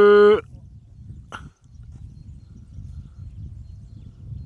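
A cow mooing: the tail of one long call, holding a steady pitch, cuts off about half a second in. After it comes only a low background rumble, with a single short click about a second later.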